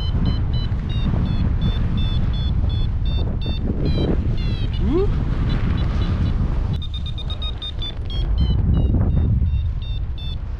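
Paragliding variometer beeping rapidly, about three or four short high beeps a second, the sign of a strong climb in a thermal of around 3.5 to 4 metres per second; the beeps thin out about halfway through and come back thick near the end. A loud, steady rush of wind on the microphone runs underneath.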